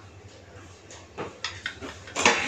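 Cooking oil being poured into an empty nonstick frying pan, a quiet sound with a few light taps and clicks from the oil container in the second half, over a faint steady low hum.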